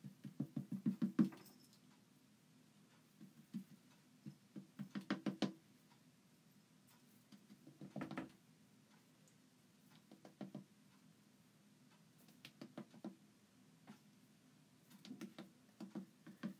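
A plastic squeegee dabbing chalk paste onto a silk-screen stencil on a board, in short runs of quick, light taps that come every couple of seconds.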